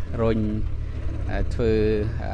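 Engine of a backhoe loader running steadily, a low rumble under a man speaking into a microphone.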